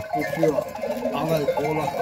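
A herd of Kilis goats bleating, several short calls one after another and overlapping.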